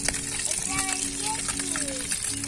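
Fish frying in hot oil in a pan on a portable gas camping stove: a steady sizzling hiss, with a steady low hum underneath.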